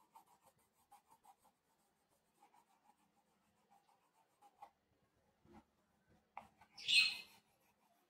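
Colour pencil shading on paper: a run of soft, quick strokes, then scattered lighter strokes, and one louder, brief scratchy rub about seven seconds in.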